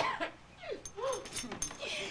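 A person making short wordless vocal sounds: four or five brief rising-and-falling noises, with a few light clicks among them.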